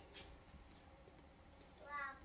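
Near silence: room tone, with a faint voice-like sound beginning near the end.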